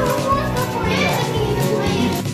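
Children's voices chattering and calling out, with background music playing underneath.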